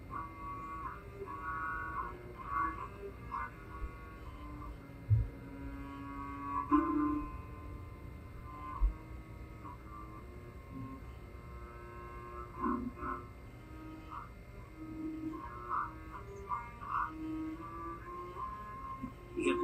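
Solo cello bowed one note at a time in a slow melody, some notes held about a second, heard through a television speaker. A sharp low thump comes about five seconds in and a weaker one near nine seconds.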